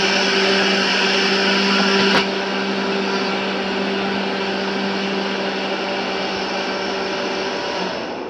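An electric appliance motor running steadily, a low hum under a rushing whir. About two seconds in there is a click and the sound drops a little in level, then carries on unchanged.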